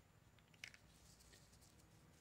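Near silence with faint handling sounds from gloved hands at the table: a small click about half a second in, then light rustling.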